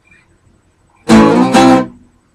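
An acoustic guitar strummed twice, loudly, about a second in: two chord strums roughly half a second apart that ring briefly.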